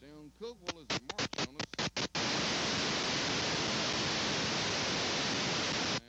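Crackling clicks for about two seconds, then a loud, steady static hiss that starts suddenly and cuts off abruptly at the end. This is noise in the old recording's audio track, not a sound from the field.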